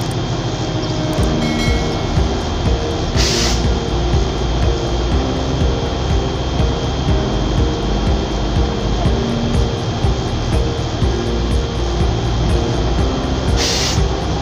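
Truck cab interior: the truck's engine and road noise run steadily and loudly under background music. Two short hisses come about three seconds in and again near the end.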